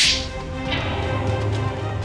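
A single sharp slap at the very start, followed by a sustained dramatic music sting with a low rumble underneath.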